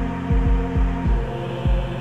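Transition sound effect: a steady low droning hum with deep bass thumps pulsing about two to three times a second, like a heartbeat.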